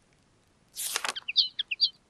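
Sketches School app's save-confirmation sound effect: a short whoosh about three-quarters of a second in, then a quick run of high, bird-like chirps, signalling that the drawing has been saved to the photo album.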